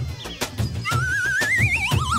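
Dramatic background music score with regular drum hits; about a second in, a high wavering tone enters and climbs steadily in pitch.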